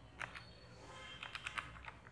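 Keys of a handheld electronic calculator being pressed: faint short clicks, two near the start and a quick run of about five in the second half.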